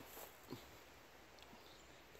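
Near silence: faint outdoor woodland ambience, with one small soft sound about half a second in.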